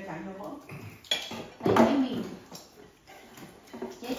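Dishes and cutlery clinking, with one sharp ringing clink about a second in, under voices.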